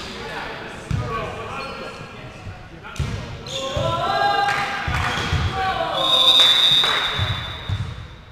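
Volleyball players shouting calls in a reverberant sports hall, with dull thuds of the ball and of feet on the wooden floor. From about six seconds in, a long, steady, high referee's whistle blast.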